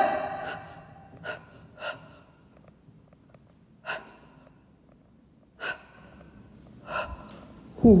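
A man's short, sharp breaths, about five of them spaced irregularly a second or two apart.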